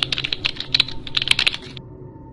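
A rapid run of sharp clicks, about ten a second, that stops shortly before the end.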